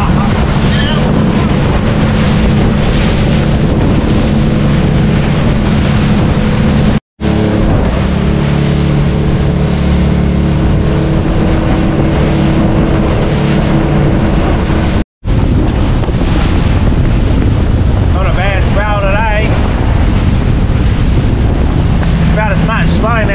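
Outboard-powered boat running at speed: a steady engine drone under wind buffeting the microphone and water rushing past the hull. The sound cuts out briefly twice.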